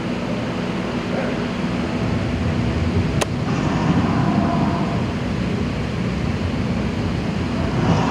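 Steady rumbling background noise, like road traffic or wind, with one sharp click a little over three seconds in.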